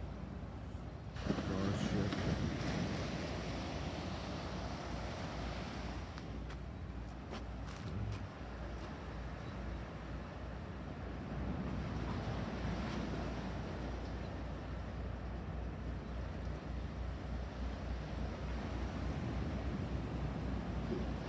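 Wind on the microphone and the sea washing against the rocks and concrete breakwater blocks of a jetty, with a steady low rumble underneath.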